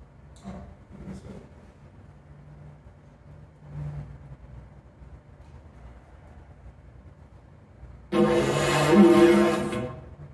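Didgeridoo blown into a steady droning tone for about two seconds near the end; before that only faint low sounds.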